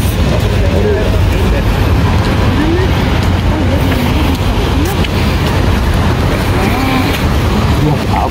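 Outdoor street noise: a steady low rumble throughout, with voices talking in the background.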